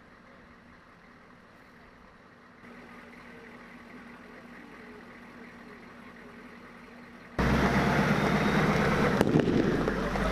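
Faint low hum for most of the stretch. About seven seconds in it cuts suddenly to the loud, rough rumble of a Humvee driving close by, with one sharp click near the end.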